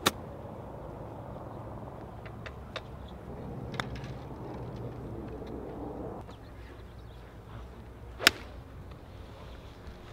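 A golf club strikes a ball at the start: a sharp click from a pitch shot off fairway turf. About eight seconds in comes a second, louder club strike from an iron tee shot, with a few fainter clicks in between.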